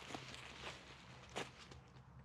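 Faint footsteps and crackling on dry pine needles and leaf litter, with a couple of sharper snaps about two-thirds of a second and a second and a half in.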